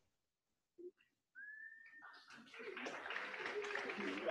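A single short whistle that rises slightly and then holds, followed by the noise of a crowd building up.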